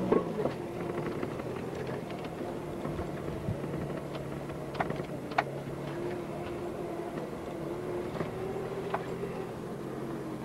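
Vehicle engine running steadily, heard from inside a car cabin following a motor grader on a gravel road, with a few sharp clicks about halfway through and again near the end.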